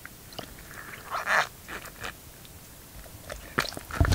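Knife cutting into a fish's stomach: short wet clicks and squelches, with a louder rasping scrape about a second in and a quick run of clicks near the end.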